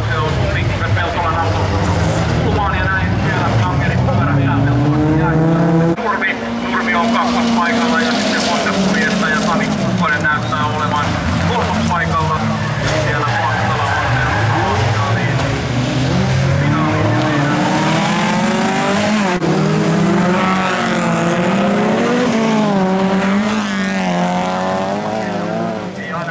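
Several jokkis (folk-racing) car engines racing on a gravel track, revving up and dropping back over and over as the drivers shift and lift through the corners.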